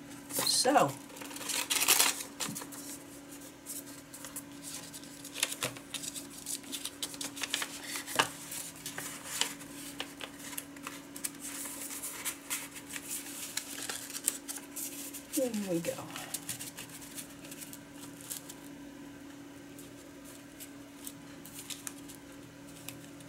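Paper envelopes rustling and sliding against each other and the cutting mat as they are handled and folded: a loud rustle near the start and another about two seconds in, then lighter crinkles and ticks on and off. A faint steady hum runs underneath.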